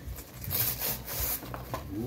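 Rustling and scraping of a small candy box's packaging as a young child handles and pulls at it, in uneven short bursts with a few small clicks.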